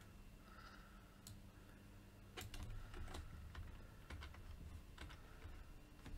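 Faint computer-keyboard keystrokes, irregularly spaced, over a low steady hum.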